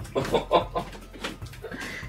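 A woman laughing, a few short quick bursts in a row, heard from across a small room.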